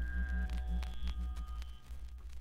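Electronic acid house/techno music thinning out near its end: a steady deep bass under a pulsing low note that fades out about halfway through, with a few sharp clicks and short high blips.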